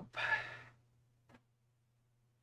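A man sighing: one breathy exhale of about half a second, right after a short spoken word. A faint low hum follows, with a soft click about a second later.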